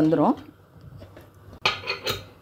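Metal clinks from a pressure cooker being closed: the lid is handled, then a sharp clink near the end as the whistle weight is set onto the vent pipe.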